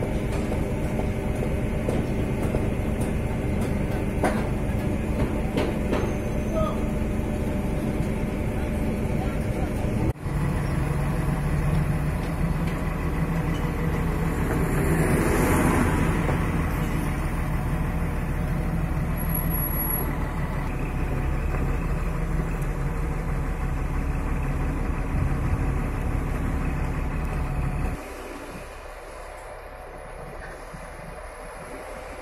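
Diesel construction machinery running steadily. After a cut about ten seconds in, it is a mobile crane's diesel engine running under load while lifting a formwork panel. There is a brief swell of hissing noise a few seconds after the cut, and the sound drops away suddenly near the end.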